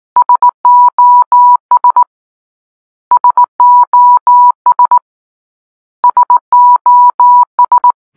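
Morse code beeps spelling SOS (three short, three long, three short) in one steady beep tone, sent three times, about every three seconds.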